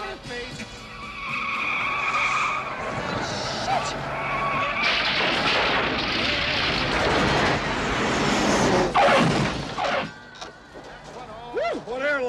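Car tyres squealing for a few seconds, then a loud rush of engine and road noise as a car speeds past on wet pavement. The noise drops away suddenly about ten seconds in.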